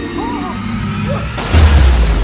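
A car smashing out through a skyscraper's glass wall: a sudden heavy crash with a deep boom about one and a half seconds in, with glass shattering.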